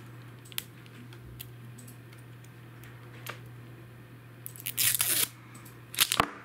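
Clear plastic shrink-wrap being picked at and torn off a lipstick: a few faint clicks, then a loud crinkling rip of the film near the end.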